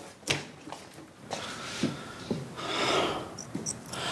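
Packing materials being handled: a few irregular sharp pops and clicks over light rustling.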